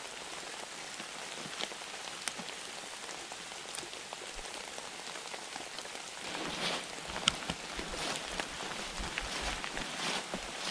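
Steady rain falling on the forest, with scattered drops ticking close by. From about six seconds in, louder irregular rustling and steps through wet undergrowth join it.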